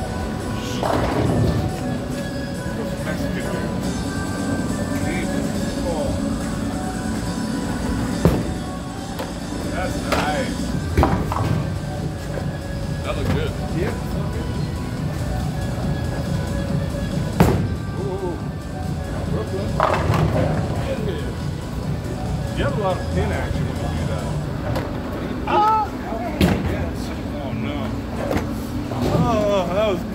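Bowling alley noise: balls rolling down the wooden lanes in a steady low rumble, with several sharp crashes of pins spread through it, over background music and voices.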